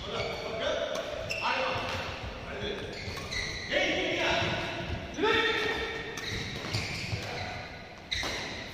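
Badminton rally: sharp racket-on-shuttlecock hits about every second or so, with court shoes squeaking in short high-pitched chirps on the indoor court floor.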